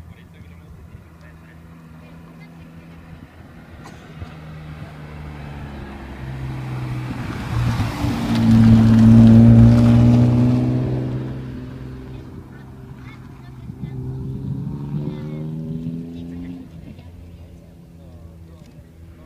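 A rally car's engine approaching, louder and louder until it is at its loudest about eight to ten seconds in as the car passes through the hairpin. It then accelerates hard away, the engine note rising again through the gears before fading near the end.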